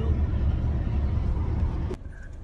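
Steady low rumble of road and engine noise inside a moving car's cabin, cutting off suddenly near the end.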